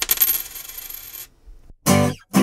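A coin dropping onto a hard surface: a few quick clinks, then a high ringing that fades away over about a second.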